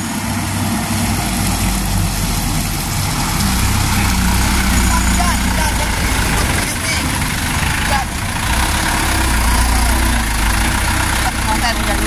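Mitsubishi Canter light truck's diesel engine running close by with a steady low drone, easing slightly about two-thirds of the way in and then picking up again, over a continuous hiss.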